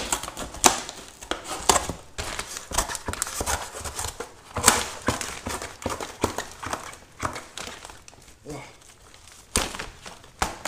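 Fiskars craft scissors cutting through a shrink-wrapped cardboard box: a run of irregular crunching snips as the blades bite the corrugated board, with crinkling of the plastic wrap as the box is handled. It thins out to a quieter stretch near the end.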